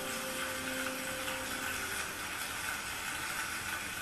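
The last held notes of the song's accompaniment fade out over the first couple of seconds. They give way to a steady, noisy wash of audience applause, heard through a television's speaker.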